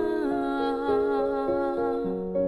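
A woman's wordless vocal line, humming or singing without lyrics, over soft keyboard accompaniment. The voice wavers in pitch at the start, then the music moves in steady held notes that change every few tenths of a second.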